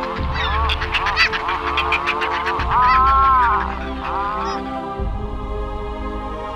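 Seabird calls over soft background music with sustained low notes. There is a rapid chattering run in the first couple of seconds, then a longer drawn honking call and a shorter one.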